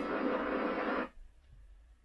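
Television audio of an onboard motorcycle lap video playing through the set's speaker, cut off abruptly about a second in as the video is paused, leaving near silence.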